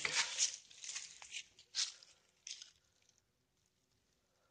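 Footsteps rustling and crunching through dry fallen leaves and twigs, a few separate steps in the first three seconds.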